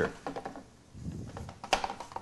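A few quiet clicks and taps from hands pressing and stretching oiled pizza dough in a metal sheet pan, most of them in the second half.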